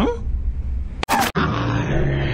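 Spliced micro-fragments of cartoon soundtrack audio, chopped together by an automated mosaic. It opens with a low rumble and a short rising glide, cuts abruptly to a brief noisy burst about a second in, then turns into a steady low hum under hiss.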